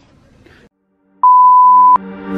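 Test-tone beep sound effect of the kind played over TV colour bars: a single loud steady tone of one pitch, starting a little after a second in and lasting under a second, after a moment of dead silence.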